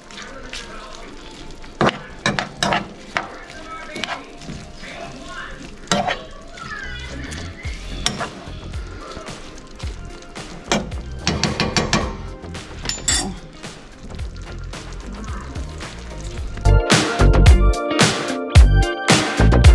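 Metal spoon scraping and stirring chopped vegetables frying in a skillet, with a steady sizzle under repeated scrapes and clinks. Loud music with a strong beat starts near the end.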